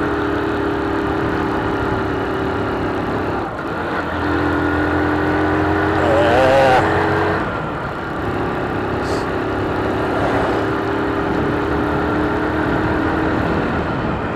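Motorcycle engine running under way, heard from the rider's position. Its steady note dips and shifts pitch twice, about three and a half and eight seconds in. A brief warbling tone rises over it about six seconds in.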